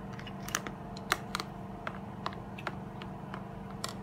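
A metal spoon clicking and tapping against a plastic bowl of Golden Morn cereal, about eight sharp, irregular clicks over a few seconds, over a steady background hum.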